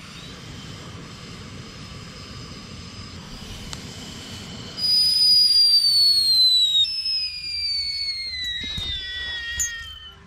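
Stovetop whistling kettle on a portable gas stove coming to the boil: a steady hiss, then about five seconds in a loud, high whistle starts suddenly and holds, its pitch sliding slowly downward.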